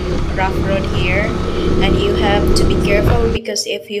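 On-board riding noise of a motorcycle on a rough dirt road: engine running under a dense rumble. The rumble cuts off suddenly about three and a half seconds in.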